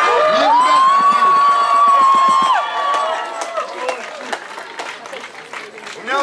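A group of men shouting a long, drawn-out cheer together, held for about two seconds, followed by scattered clapping and crowd noise as the cheer dies away.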